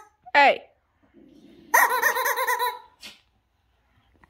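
A baby vocalizing: a short squeal that falls in pitch near the start, then a longer, louder squeal with a wavering pitch about two seconds in.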